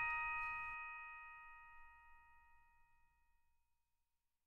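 Background music ending: its beat stops under a second in, and a final bell-like chord rings on and fades out over about three seconds.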